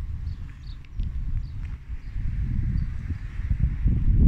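Wind buffeting the microphone in a heavy, irregular rumble, with a few light footsteps on the pavement.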